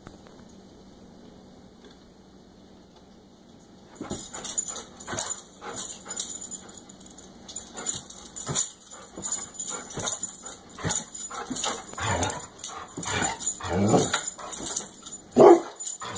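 A dog whining and yipping in short, excited cries that start a few seconds in and grow louder near the end.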